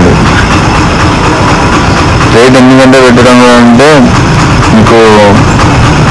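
A man speaks briefly twice over loud, steady background noise that runs without a break.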